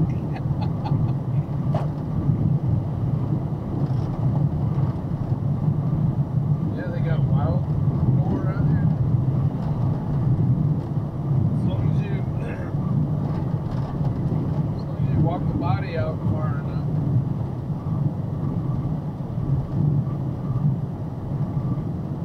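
Steady low drone of engine and road noise inside a truck cab at highway speed, with faint speech now and then.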